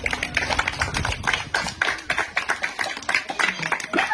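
A quick, irregular run of sharp taps and clicks, several a second, with no music or tune behind them.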